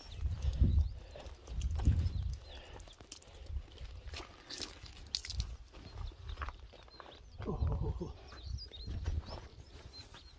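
Deep rumbling gusts, strongest in the first two seconds, with a short animal call about seven and a half seconds in and a few brief high chirps near the end.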